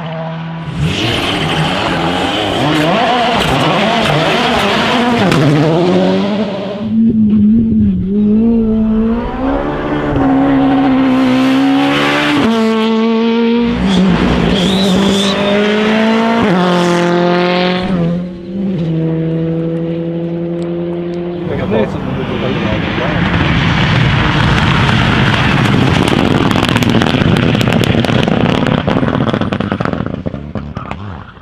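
Rally cars driving a special stage one after another. Their engines rev high and drop in steps through gear changes, with stretches of loud rushing noise as the cars pass.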